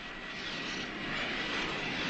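Jet aircraft in flight: a steady rushing noise that swells slightly.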